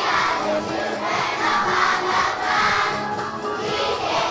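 A crowd of voices singing together, swelling in a regular pulse about twice a second.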